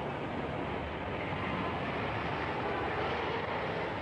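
Street traffic noise: a steady rumble and hiss of motor vehicles that swells a little in the middle.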